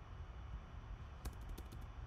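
Computer keyboard typing: a quick run of key clicks a little over a second in, over a low steady hum.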